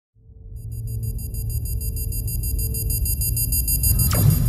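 Electronic intro sound design: a deep rumbling drone fades in, joined about half a second in by a high, rapidly pulsing electronic tone.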